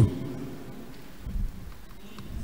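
A pause between spoken phrases, leaving only a faint low rumble of room noise through the microphone, with a brief swell about one and a half seconds in.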